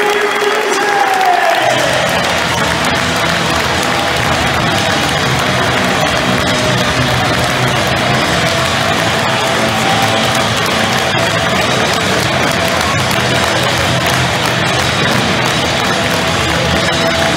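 Music played over a football stadium's public-address system, with the crowd applauding and cheering; the music's bass comes in about two seconds in.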